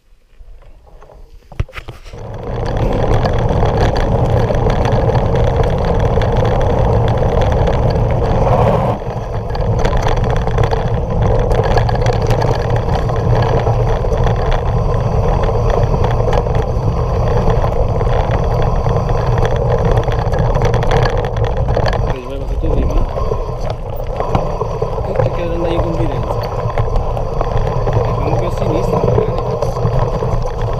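Mountain bike ride heard through an action camera's microphone: steady wind rush and tyre rumble on a gravel trail, starting about two seconds in after a quieter moment.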